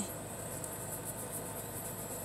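Steady faint background hiss inside a car cabin, with no distinct events.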